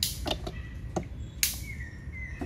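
A few short, sharp splashes and knocks, the loudest about one and a half seconds in, as a ring-net crab trap is hauled up by its rope out of the water beside a wooden canoe. A bird calls with short high chirps in the background.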